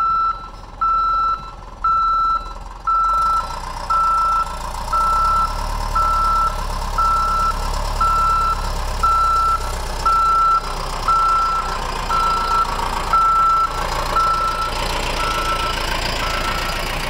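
Caterpillar motor grader reversing: its backup alarm beeps at one steady pitch about once a second, over the steady running of its diesel engine, which gets louder from about three seconds in.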